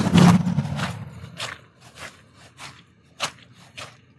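Footsteps of a person in shoes walking on short turf grass, a steady stride of about one step every 0.6 seconds, after a louder rustling scuff at the start.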